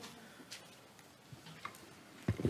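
Quiet room tone with a few faint, separate clicks.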